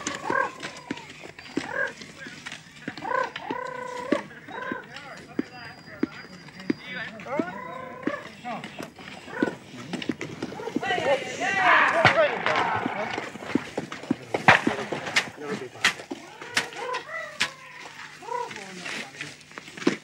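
Indistinct voices talking, mixed with frequent short crackles and rustles of dry reeds being trodden and pushed through.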